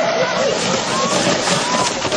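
Indistinct voices, with no clear words, over a steady rushing noise.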